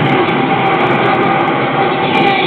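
A Bisty Evangelion ~Seimei no Kodō~ pachislot machine playing a loud, dense rumbling sound effect, with faint tones underneath, during its 'awakening mode' screen animation.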